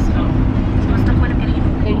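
Steady low road rumble of a car driving, heard inside the cabin.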